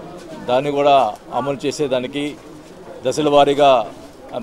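Speech only: a man talking in Telugu.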